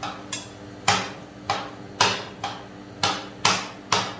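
Metal rolled-ice-cream spatulas chopping banana slices on a stainless-steel cold plate: sharp metal clacks about two a second, each ringing briefly.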